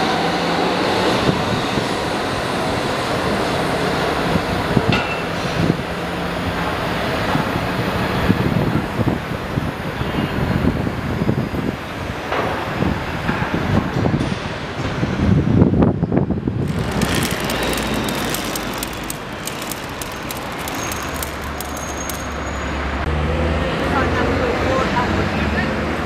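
An Amsterdam metro train pulling out, its motor whine rising in pitch in the first second or so, giving way to steady road traffic noise. An abrupt cut about two-thirds of the way in brings busier street noise with voices.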